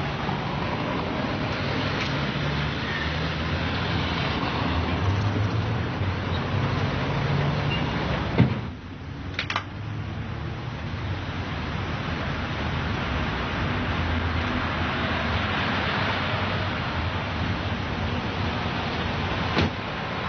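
Car on the move: steady engine and road noise. About eight seconds in there is a sharp thump and the noise briefly drops, with a couple of clicks a second later and another knock near the end.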